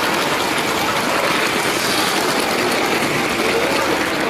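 A LEGO train running on plastic track, heard from a camera riding aboard it: a steady rattle of wheels and motor, mixed with the noise of a crowd in a large hall.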